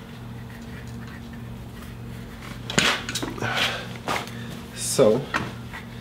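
Hands working soil and knocking against a plastic nursery pot: a sharp knock about three seconds in, then a second or so of scraping and rustling. A low steady hum sits underneath.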